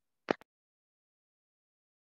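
A short, sharp click followed by a fainter second click about a tenth of a second later, in otherwise dead silence.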